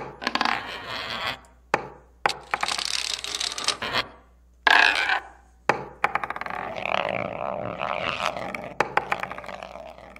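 Sound effects for an animated end screen: a string of swishing noise bursts broken by sharp clicks and knocks, with a longer, busier rattling stretch in the second half.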